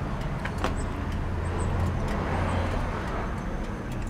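Steady low rumble of motor vehicle noise, with a few faint clicks.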